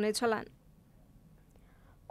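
A voice speaking for the first half second, then near silence: room tone.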